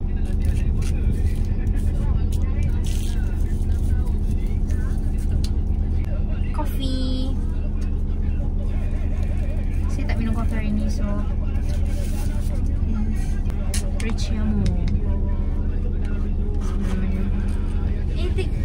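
Steady low drone of a car heard from inside the cabin, with faint, indistinct voices now and then.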